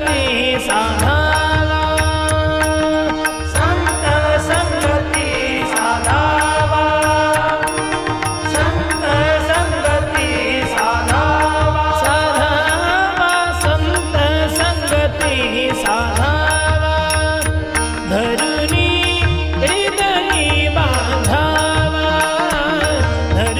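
A Marathi abhang, a Warkari devotional song, sung by a male voice with instrumental accompaniment: a held drone under the melody, a low recurring drum pulse, and sharp high strokes keeping the beat.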